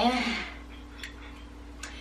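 Two light clicks a little under a second apart as novelty party glasses are handled, over a faint steady room hum.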